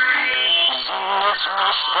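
A song with instrumental accompaniment; about half a second in, a voice begins singing a wavering, heavily ornamented melody over it.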